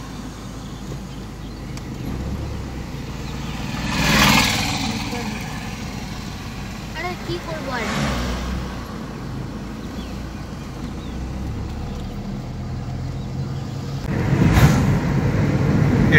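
Steady engine and road rumble heard from inside a moving car, with three louder rushing swells about four, eight and fifteen seconds in, the last the loudest.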